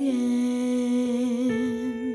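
A vocalist in a jazz-blues song holds a long wordless note, humming, with the pitch wavering in a vibrato toward the end, over soft instrumental backing.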